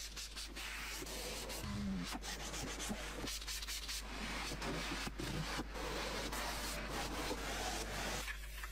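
White sponge rubbing and scrubbing over a car's plastic interior door panel and sill, a steady rasping wipe in uneven strokes.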